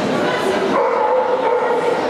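A dog yipping, with one drawn-out call lasting about a second near the middle.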